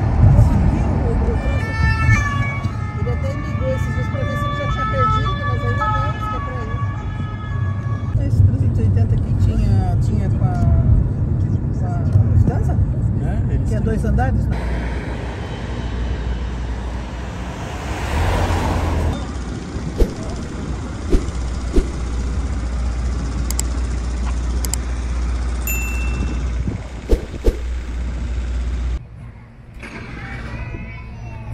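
Road traffic noise with a steady low rumble. In the first several seconds a high wailing tone steps back and forth between pitches, and a passing vehicle swells up about two-thirds of the way through.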